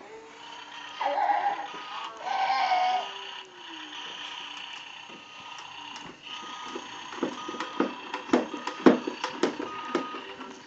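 Electronic tune and beeps from a toddler's battery-powered ride-on toy, its button panel being pressed. Two short voice sounds come about one and two and a half seconds in, and a run of sharp plastic knocks and clatter fills the last few seconds.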